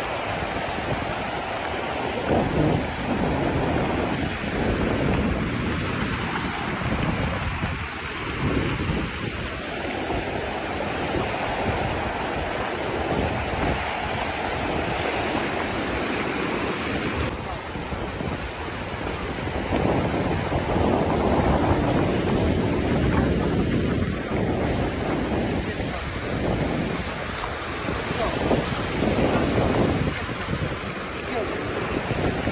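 Small ocean waves breaking and washing over the shallows, swelling and ebbing every few seconds, with wind rumbling on the microphone.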